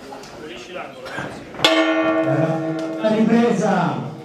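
A ring bell struck once about a second and a half in, signalling the start of round 2, its tone ringing on and slowly fading, with voices underneath.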